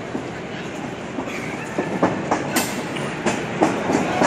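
Wrestling ring boards thudding under running feet: a quick run of thuds, about four a second, through the second half, over crowd chatter.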